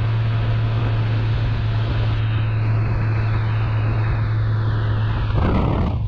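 Motorcycle cruising on an open road: wind rushing over the microphone with a steady low engine drone underneath. A brief louder rush of noise comes near the end.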